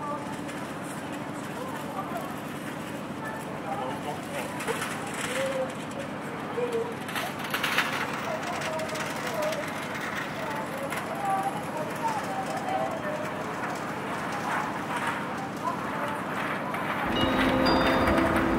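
Railway station platform ambience: a steady background hiss with faint, indistinct voices murmuring and a few brief knocks around the middle. A steady pitched tone starts near the end.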